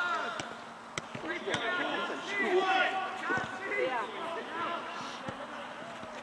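Background voices of a group chattering and laughing, with a few sharp thuds in the first second and a half from a football being bounced.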